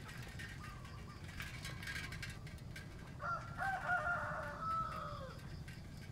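A rooster crowing once: a single drawn-out crow of about two seconds, starting about halfway through and dropping in pitch at the end, over a steady low background rumble.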